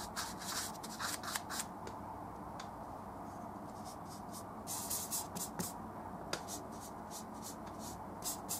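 A bristle paintbrush scrubbing and dabbing oil paint in short, quick scratchy swishes: a flurry in the first second and a half, a pause, then another flurry about five seconds in, over a steady low hum.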